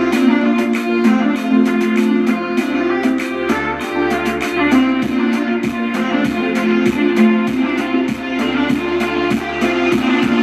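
Background music led by guitar, with regular plucked notes and a steady beat.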